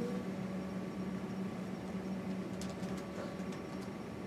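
Steady low machine hum of room equipment, with a few light clicks in the second half.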